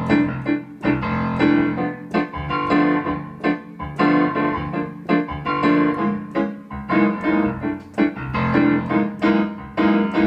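Digital piano set to a grand piano sound, playing a bossa nova: a low bass pattern in one hand under chords comped in the other, in a steady rhythm of repeated chord attacks.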